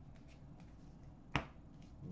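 A single sharp snap about one and a half seconds in, from hockey cards being handled and sorted by hand; otherwise faint room tone.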